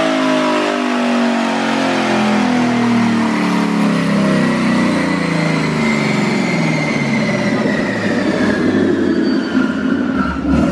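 Twin-turbocharged Coyote 5.0 V8 of a 2019 Ford Mustang GT on a chassis dyno, winding down from a pull: engine speed falls steadily as the rollers coast down. A high whine slides down in pitch with it.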